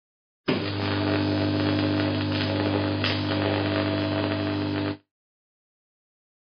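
Steady electrical hum with hiss, starting about half a second in and cutting off suddenly about five seconds in.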